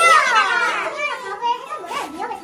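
A high-pitched voice call that slides down in pitch over about a second, followed by brief voice sounds.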